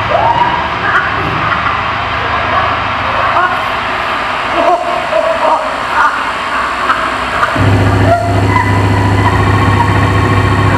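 Live electroacoustic music: a dense, noisy layered texture with short gliding tones, joined about three quarters of the way through by a sudden steady low drone.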